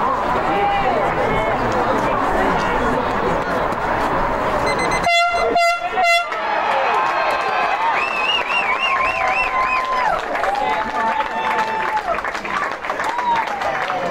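A football ground's siren sounding in three short, loud blasts about five seconds in: the final siren ending the match. Spectators shout and cheer around it.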